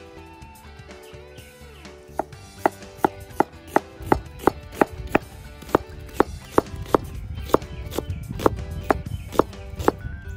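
Cleaver chopping onion on a plastic cutting board: sharp strokes about two to three a second, starting about two seconds in, over background music.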